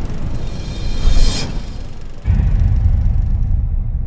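Animated logo sting of whooshes and a deep boom. A bright swish peaks about a second in. A heavy low boom hits just after two seconds, then rumbles on and slowly fades.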